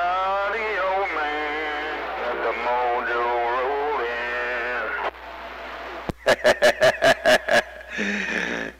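CB radio transmission heard from the radio's speaker. A wordless, wavering pitched sound is held for about five seconds. After a short lull comes a fast run of about eight short pulses near the end.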